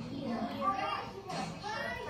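Speech from a documentary clip played over a classroom's loudspeakers: an adult and a child talking in a classroom scene, with other children's voices behind them.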